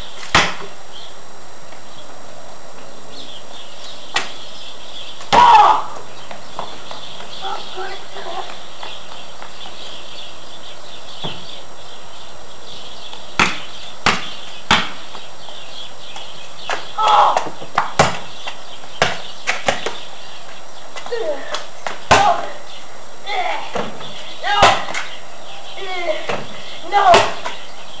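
A basketball bouncing on a concrete driveway and hitting the hoop: a string of sharp, irregular thuds, more frequent in the second half. A boy shouts "No!" several times near the end, over a steady hiss.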